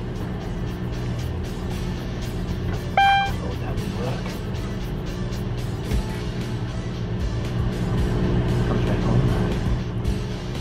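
Boat diesel engine running steadily at idle, with one short electronic beep from the helm engine panel about three seconds in.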